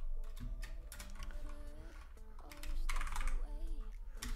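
Typing on a computer keyboard: quick runs of keystrokes, loudest about three seconds in.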